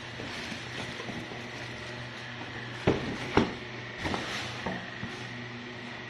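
Handling noise of a boxed model kit being taken out of a plastic shopping bag: two sharp knocks a little under halfway, half a second apart, then a few lighter taps, over a steady low hum.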